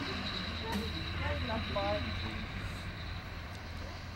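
Children's voices calling out in the first two seconds, over a steady low engine rumble.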